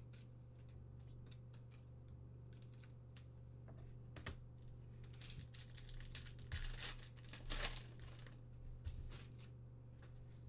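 A foil trading-card pack wrapper being torn open and crinkled by hand. There are a few light clicks first, then bursts of crinkling from about halfway through, loudest shortly before the end, over a faint steady hum.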